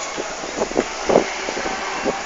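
City street noise heard from high up: a steady traffic hum with short, irregular sounds over it, the loudest a little past a second in.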